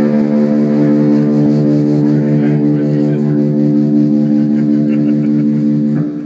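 Electric guitar through effects holding one sustained chord, a steady loud drone with no drums under it.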